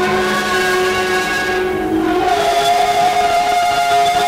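A man and a woman singing together into microphones in a church service, holding long sustained notes over instrumental accompaniment; the notes change to a new held chord about two seconds in.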